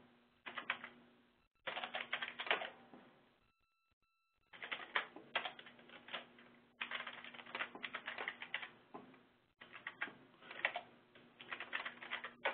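Typing on a computer keyboard: quick key clicks in short bursts, with brief pauses between them and a short silence about four seconds in.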